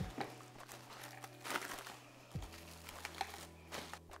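Plastic cling film crinkling faintly in a few soft rustles as it is pulled off the roll and stretched over a cake pan.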